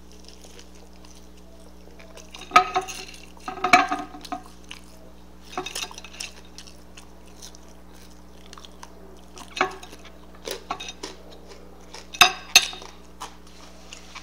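Eating sounds: chewing and mouth noises from bites of a burger and French fries, with scattered short clicks and small knocks over a steady low hum.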